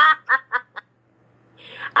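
A person laughing: an exclaimed "ah!" followed by three quick, short ha's in the first second, then a pause and a soft in-breath before speech.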